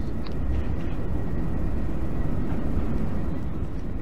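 Steady low-rumbling room noise with a faint thin high whine above it, unchanging throughout.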